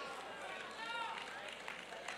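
Faint voices from the congregation in the hall, with one short rising-and-falling call about a second in.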